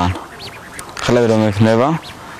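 A man's voice: a pause, then a short spoken phrase about a second in, rising in pitch at its end.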